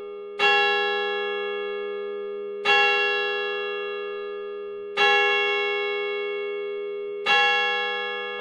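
A large church bell struck four times, a little over two seconds apart, each stroke ringing on and fading slowly into the next.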